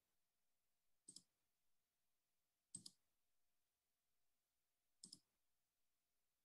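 Computer mouse clicked three times against near silence, each time a quick pair of faint ticks.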